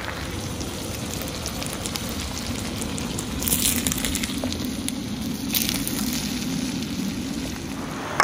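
Salmon fillets frying in herb-infused butter on a disc griddle over a propane burner: a steady sizzle, briefly louder twice, a few seconds in and again past the middle.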